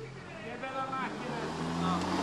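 Audi R8 Spyder's V10 engine approaching at low speed: a steady low engine note that grows louder as the car nears. Men's voices are heard over it in the first second.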